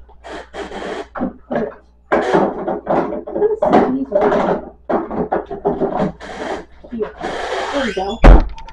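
Plastic bag rustling and rubbing close to the microphone in short, irregular bursts as a bag of frozen cherries is folded shut.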